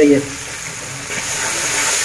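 Onion, tomato and spice masala sizzling in ghee in an aluminium pot, the steady sizzle growing louder about halfway through as it is stirred with a wooden spoon.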